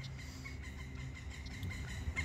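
A woodpecker calling in the trees: a few faint, short calls over a low steady background.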